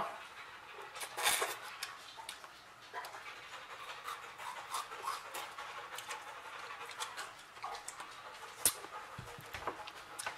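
Close-up mouth sounds of a person eating a frozen pickle-juice popsicle: wet licking and slurping with scattered small clicks, a louder patch about a second in.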